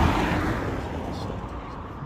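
A car passing close by and fading away as it drives off, its tyre and engine noise dying down steadily.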